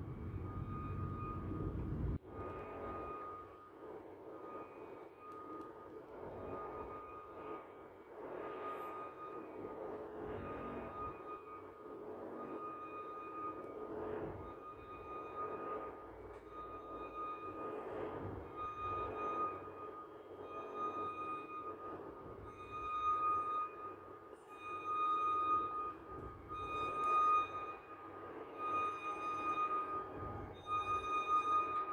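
Automatic blood-pressure monitor's air pump inflating the arm cuff: a steady electric whine that pulses and grows louder as the cuff pressure climbs toward 200 mmHg. A low rumble in the first two seconds cuts off abruptly.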